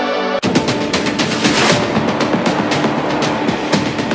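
A music jingle cuts off sharply about half a second in and gives way to a dramatic TV promo intro sting: a dense run of rapid percussive hits like gunfire over a low steady drone.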